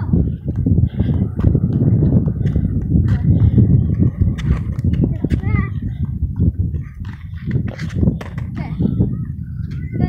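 Small plastic penny-style skateboard rolling on a concrete sidewalk: a steady low rumble from the wheels with scattered clacks, easing off briefly in the middle.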